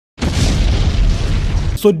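Boom sound effect: a loud burst of noise with a deep rumble, lasting about a second and a half and cutting off suddenly.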